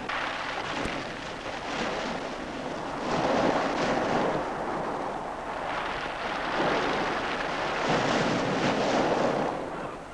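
Sea surf: waves rolling in and breaking on a pebble beach, a rushing noise that swells about three seconds in and again in the second half.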